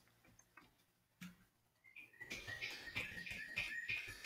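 Faint computer keyboard typing: quick, irregular key clicks starting about two seconds in, with a thin, steady high tone running underneath.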